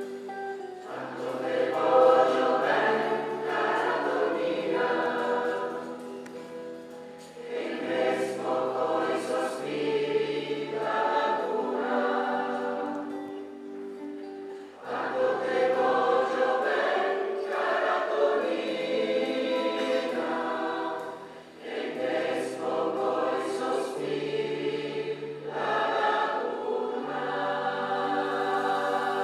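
Large mixed choir of men and women singing an Italian folk song in long phrases, with short breaks about every seven seconds, over held low notes from the band.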